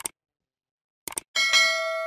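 Subscribe-button animation sound effects: a short click, then a quick double mouse click about a second in, followed by a bright bell ding that rings on and slowly fades.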